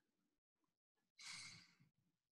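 A person sighing once, a breathy exhale of about half a second starting a little past a second in, amid near silence.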